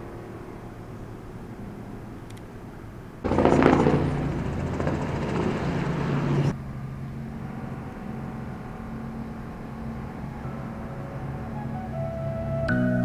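Helicopter flying overhead, its rotor noise loud and fast-pulsing for about three seconds before cutting off; before and after, a steady low outdoor hum.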